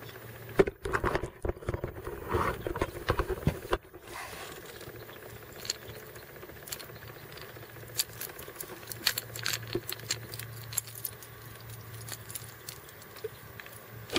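Knocks and rattles in a small boat as a hooked bass is landed and handled on the line: a cluster of sharp knocks in the first few seconds, then scattered light clicks over a faint steady low hum.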